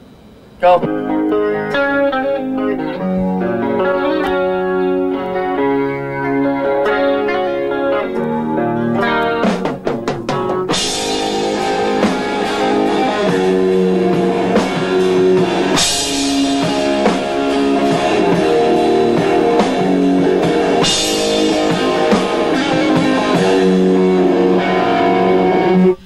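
Rock band playing: an electric guitar riff alone for about the first ten seconds, then the drum kit comes in and the full band plays, with crash cymbal hits.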